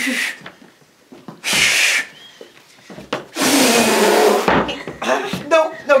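A person trying to whistle and failing: two breathy blows of air with no clear note, the second one longer, because the mouth is too dry to whistle.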